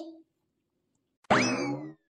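A short cartoon sound effect about a second and a quarter in: a sharp twang whose pitch leaps up and then slides slowly down, lasting about half a second.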